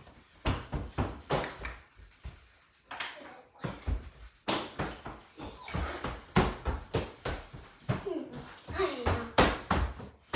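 Repeated heavy thuds, irregular and about two a second, like something bouncing or landing on a floor, with a child's voice heard now and then.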